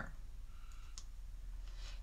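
Faint handling noise from hands working a wired-ribbon angel and thin cord, with one light click about a second in, over a low steady hum.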